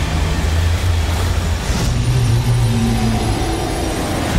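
Cinematic sound design of a sperm whale breaching: a loud, dense rush of crashing water and spray over deep low tones that shift to a higher set of tones about halfway through, blended with trailer music.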